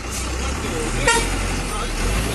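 Bus engine running steadily with a low hum, with one short horn toot about a second in.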